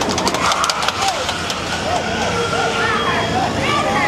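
A Toyota sedan's engine running as it drives close past, over a steady street hum, with people's voices calling out. There are a few sharp clicks in the first second.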